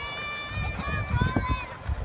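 A child's high-pitched voice calling out in two long held notes, over a low, uneven rumble such as a plastic big-wheel trike rolling on asphalt makes.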